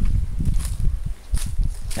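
Footsteps through jungle undergrowth, with irregular low thumps and a few sharp rustles and snaps of leaves and stems.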